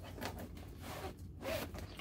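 Cardboard game box sliding against its cardboard outer sleeve, a scraping rasp of cardboard on cardboard for about a second before it quiets.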